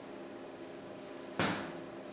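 A single sharp knock about one and a half seconds in, over a steady low room hum.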